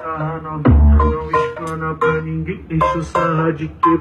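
Brazilian funk (pancadão) played loud through a small homemade car-audio speaker box, a male vocal over the beat and a heavy deep bass hit about a second in.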